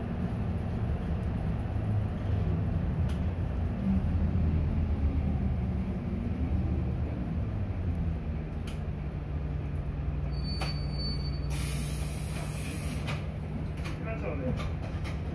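Interior of an Isuzu city bus: the diesel engine and drivetrain rumble as the bus runs, settling into a steady low hum a little past halfway. Near the end comes a short hiss of released air.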